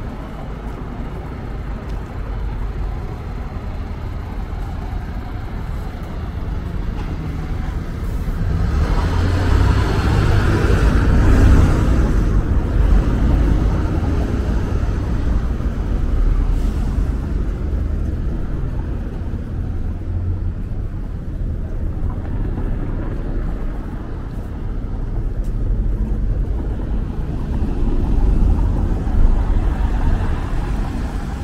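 Street traffic on cobblestones: a city bus and cars driving past at low speed, a steady low rumble throughout. One vehicle passes close and loudest about ten seconds in, and another approaches near the end.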